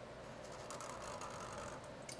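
Sharpie permanent marker drawn across paper: the felt tip gives a faint scratching from about half a second in, over a low steady room hum.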